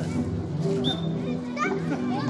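Open-air ambience of children's voices calling and shouting, over background music with steady held notes.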